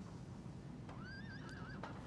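A horse whinnying once, faintly: a short wavering call about a second in, heard from a film soundtrack played back over speakers in a room.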